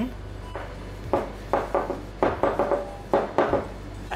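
Metal cake tin being shaken and tapped to spread flour over its buttered inside: a series of short knocks and rattles.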